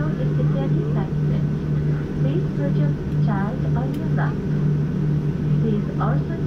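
Steady low hum inside a Boeing 787 airliner cabin on the ground, with indistinct voices talking over it.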